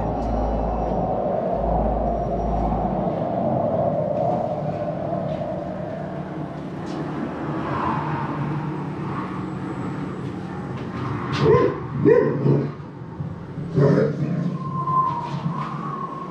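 A wintry soundscape played in a dark diorama: a steady rush like wind for the first half, then several short dog barks, loudest around two thirds of the way through, with a brief higher call near the end.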